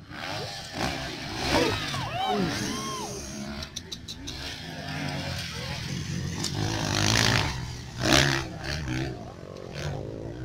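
Dirt bike engines running and revving on a motocross track, mixed with onlookers' voices and shouts.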